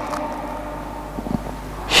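A pause in speech: steady low hum and room tone of a large hall's sound system, with a few faint clicks a little over a second in.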